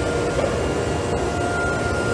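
CNC nesting router running, its gantry moving the suction-pad sheet loader: a steady machine hum and rushing noise with a constant high whine.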